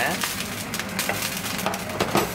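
Boiled gnocchi sizzling in a hot nonstick frying pan, with steady crackling as they are stirred around with a utensil.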